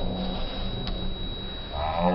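Slowed-down, pitched-down sound of a karate sparring bout: a low steady drone with a thin high whine, a single click about halfway through, and near the end a deep, drawn-out voice that slides slowly in pitch, like a shout stretched by the slow motion.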